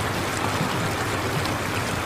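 Steady, even rushing noise of flowing water.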